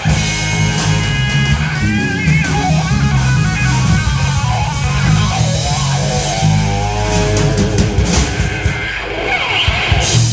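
Live Texas blues-rock trio: electric guitar playing a lead line with bent, wavering notes over bass guitar and drums.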